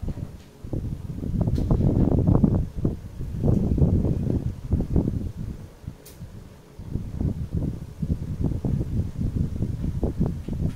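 Colored pencil shading on paper in rapid back-and-forth strokes, a dense scratchy rubbing that eases off briefly about three and six seconds in.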